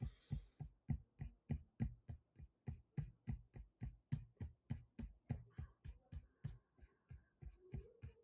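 Computer mouse scroll wheel clicking, faint and steady at about four clicks a second, as a long on-screen list is scrolled down.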